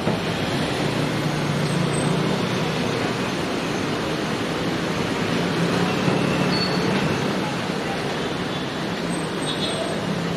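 Steady road traffic: cars and vans running on the street, a constant wash of noise with a low engine hum.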